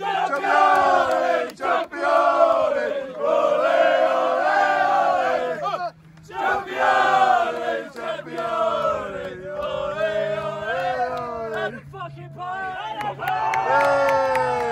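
A group of footballers chanting together in loud, drawn-out sung phrases, each sliding down in pitch, with brief breaks between them.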